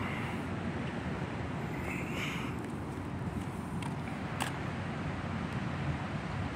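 Steady low rumble of outdoor city background noise, with a faint click about four and a half seconds in.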